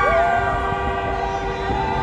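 Several horns blown in long, overlapping held notes, one sliding down in pitch at the start and another joining near the end, as a celebrating street crowd sounds them.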